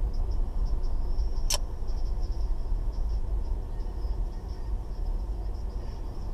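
Steady low engine and road rumble of a car driving slowly, heard from inside the cabin, with a faint high-pitched wavering whine throughout. A single sharp click about one and a half seconds in.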